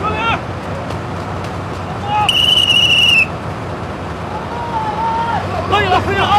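A single steady whistle blast about a second long, sounded as the signal to start raising a drilling derrick, over the steady low running of heavy crawler-tractor engines.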